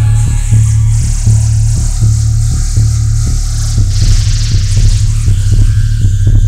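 Loud industrial synth punk music: a heavy bass line under a steady beat of about three to four hits a second, with a hiss of noise on top.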